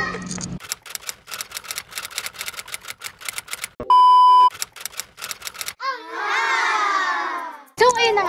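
Editing sound effects: rapid typewriter-like clicking, broken about halfway by a loud steady test-tone beep lasting about half a second, the kind that goes with TV colour bars. Then about two seconds of a warbling sound that falls in pitch.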